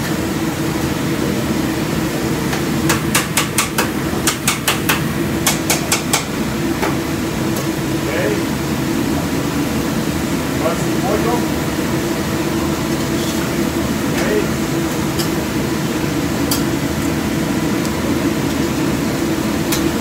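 Steady drone of a commercial kitchen's ventilation fan, with a quick run of about a dozen sharp knocks a few seconds in from a cook's metal utensil striking as he works the food at the griddle.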